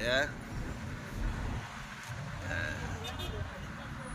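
Low steady rumble of a car's engine and road noise heard from inside the cabin as the car creeps along in traffic.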